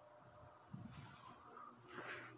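Near silence: faint background hiss, with one soft low sound a little under a second in.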